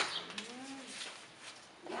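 A pigeon cooing: one low call that rises and falls in pitch, lasting about half a second.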